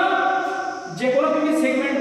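A man's voice drawn out in long sounds held at a steady pitch, twice, close to chanting or singing.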